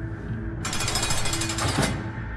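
A fast, rapidly repeating rattle, starting a little over half a second in and stopping sharply about a second later, over soft steady background music.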